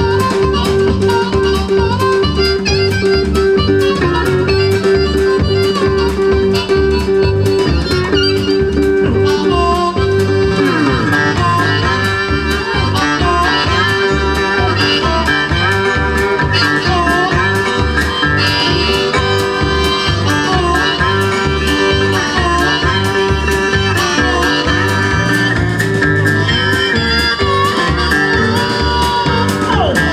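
Live blues band instrumental: a harmonica leads with long held notes at first, then bent, wavering phrases from about ten seconds in, over guitar, electric bass and a steady drum beat.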